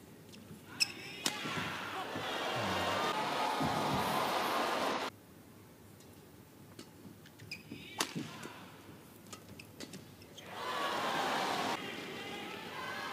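Badminton shuttlecock struck by rackets a couple of times, followed by an arena crowd cheering for a few seconds until the sound stops suddenly. After a quieter stretch with a few more racket hits, a second, shorter burst of crowd cheering comes near the end.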